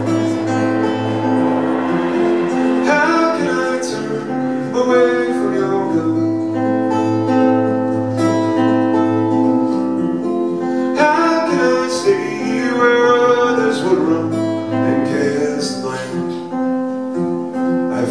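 Live acoustic guitar playing a slow song, with ringing chords and picked notes and a singing voice over it at times.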